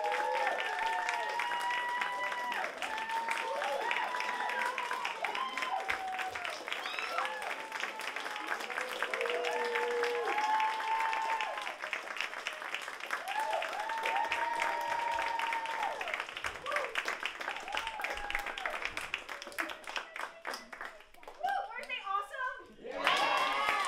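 Audience applauding, with many voices calling out and cheering over the clapping. The clapping thins out and dies away near the end.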